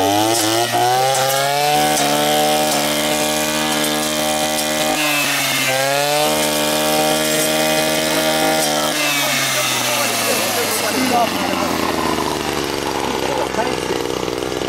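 Maruyama MX21H two-stroke brush cutter engine revving up to full throttle, dipping briefly about five seconds in and climbing again, then winding down about nine seconds in.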